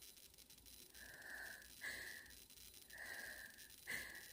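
A woman crying quietly: a run of four shaky breaths and sniffles, about one a second, starting about a second in.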